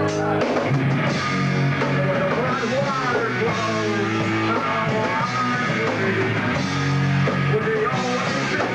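A rock band playing live: electric guitar, bass guitar and drum kit, with a man singing into a microphone.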